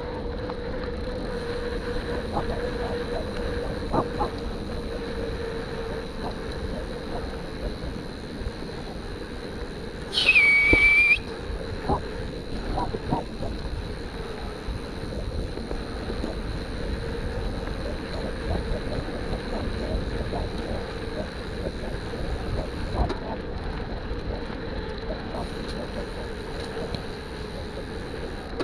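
Mountain bike rolling fast along a gravel forest track: steady tyre noise on the gravel with small stones clicking and wind on the microphone. About ten seconds in, a loud high squeal lasts about a second, sliding down in pitch and then holding steady.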